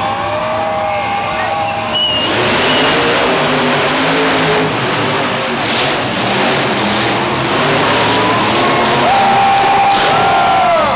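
Monster truck engines revving hard at full throttle during a race, the sound jumping up suddenly about two seconds in and staying loud. Crowd shouts and cheers come through over it at the start and again near the end.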